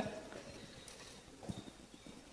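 Faint room tone in a pause of a talk, with two short, soft low knocks about one and a half seconds in, just after a man finishes a word.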